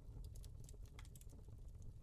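Near silence: faint room tone with a low hum and a few faint scattered clicks.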